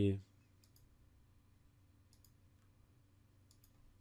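A few faint computer mouse clicks, some in quick pairs, spread through a quiet stretch.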